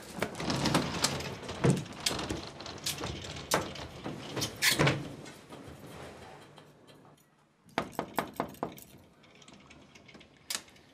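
Rustling and scattered knocks, then a quick run of sharp clicks and knocks about eight seconds in, as a sliding wardrobe door is moved.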